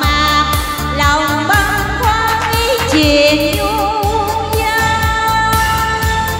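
A Vietnamese song sung into a microphone with vibrato, over instrumental accompaniment with a steady beat.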